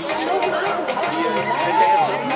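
Many people talking at once: overlapping chatter from a group.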